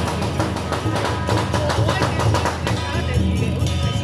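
Temple-procession percussion band playing: rapid, dense drum and cymbal strikes over a steady low drone, the clatter thinning out about three seconds in.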